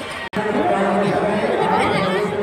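Crowd of many people talking at once. The audio drops out for an instant about a third of a second in, and the chatter comes back louder.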